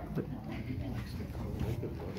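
Low, indistinct voices murmuring in a small room, with a few light knocks.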